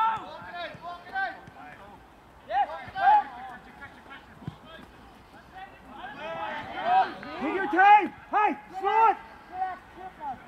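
Footballers shouting short calls to each other across the pitch, a few at first and then a busier run of shouts in the second half.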